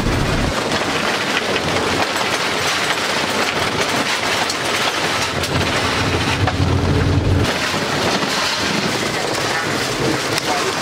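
Toyota Coaster bus driving over a heavily corrugated gravel road: a loud, continuous rattle and clatter of the body and loose fittings over road noise, from the constant washboard shaking.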